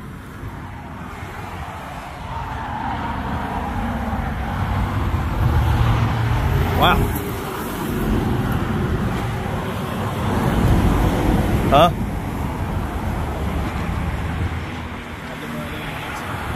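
Low, steady motor-vehicle rumble that swells and eases, with two brief voice-like sounds about seven and twelve seconds in.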